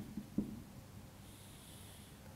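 Faint light taps of a marker pen on a whiteboard, about six a second, dotting a line; they stop about half a second in. A faint hiss in the second half, a marker stroke drawing a short line.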